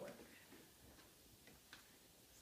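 Near silence with a few faint, scattered clicks from the plastic parts of a Clek Foonf car seat as they are handled and pushed into place.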